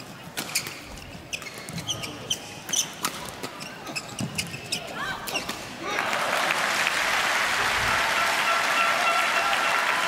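Badminton rally: a quick series of racket hits on the shuttlecock and footwork on the court. The rally ends with a kill about six seconds in, and the arena crowd applauds steadily from then on.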